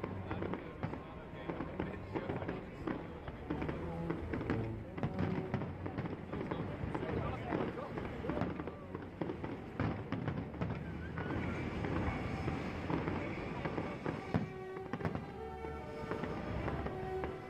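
Fireworks display going off: many rapid pops and crackles follow one another, over a background of people's voices and music.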